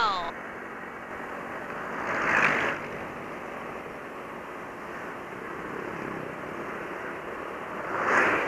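Steady wind and road noise on a motor scooter's helmet-camera microphone while riding along at speed, with a brief surge of rushing noise about two seconds in.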